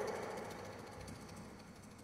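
Sound-art installation playback of sonified everyday objects: a fast, regular, machine-like buzzing pulse that fades away.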